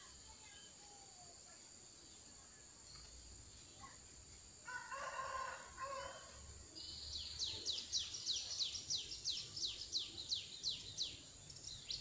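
A rooster crows once, about five seconds in. Then a small bird calls a quick run of high falling notes, about three or four a second, for several seconds.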